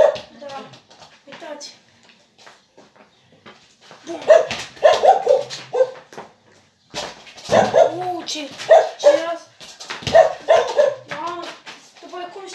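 A dog barking repeatedly in short bursts, in groups separated by brief quiet gaps.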